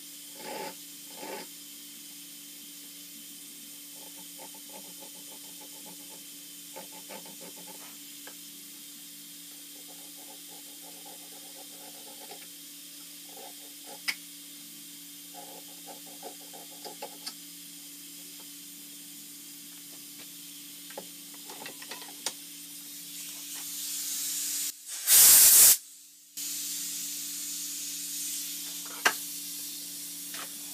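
Steady low workshop hum, with faint clicks and rubbing as small steel collet blanks are handled and worked in a bench vise. Hiss builds up near the end, and about 25 seconds in comes a loud hiss lasting about a second.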